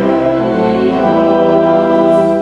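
Church organ playing slow, held chords.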